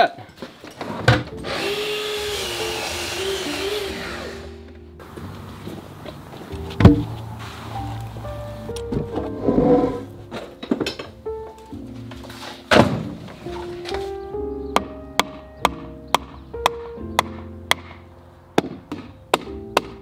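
Background music with a Festool Kapex sliding mitre saw cutting timber for about three seconds near the start. A few heavy thuds follow later, the loudest about 7 and 13 seconds in.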